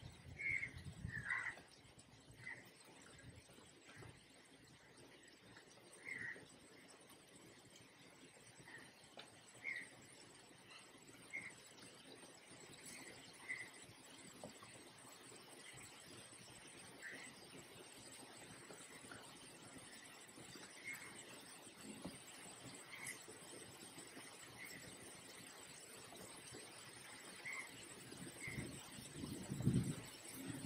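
Faint, short bird calls recurring every second or two over quiet room tone.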